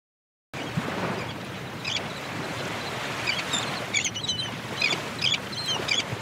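Surf washing on a beach, with birds chirping in short repeated calls from about two seconds in; the sound starts about half a second in.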